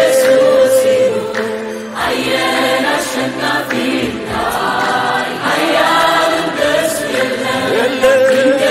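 Large mixed choir singing a gospel worship song, with long held notes.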